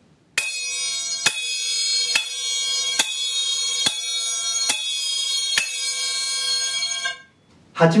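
A pair of chappa, small Japanese hand cymbals, clashed together in open 'jan' strokes: seven even clashes a little under a second apart, each ringing on into the next, until the ringing is cut off suddenly near the end. The cymbals meet slightly offset so that air escapes from the cups, giving a clean, clear ring without the noise of trapped air.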